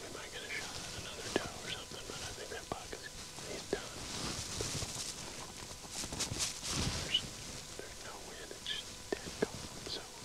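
A man whispering in a hushed voice, with a few small faint clicks.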